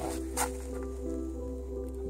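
Background music holding a steady chord with no beat.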